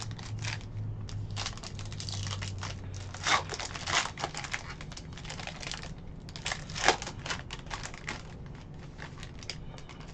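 Foil wrapper of a Panini Court Kings trading-card pack crinkling and tearing as it is opened by hand, with irregular crackles and a few sharper rips.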